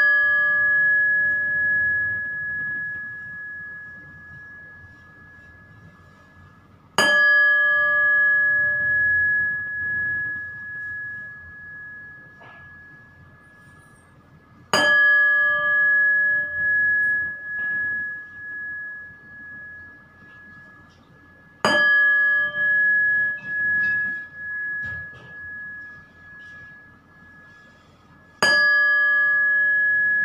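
A meditation bell struck about once every seven seconds, four times, each strike ringing on in a clear high tone that fades slowly with a pulsing waver, the ringing from a strike just before still dying away at the start.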